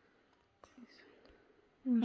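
A faint whisper, with a small click a little over half a second in, before normal speech resumes at the very end.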